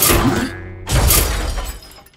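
Two loud cartoon crash sound effects, one at the start and a second about a second later, with faint background music.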